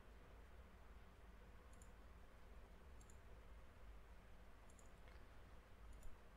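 Near silence with a low room hum and four faint, sharp computer mouse clicks spread across a few seconds.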